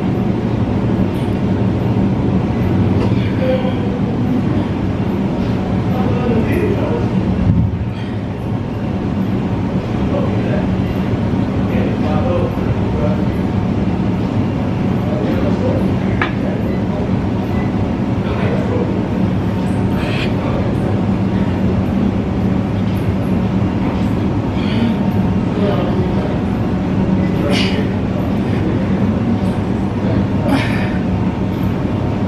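Steady low rumble and hum of a gym's running machines, with faint voices of other people in the room.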